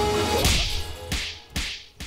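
Exaggerated film slap sound effect: a sharp swish and crack about half a second in, then two shorter cracks. Background music with steady held tones cuts off just before the swish.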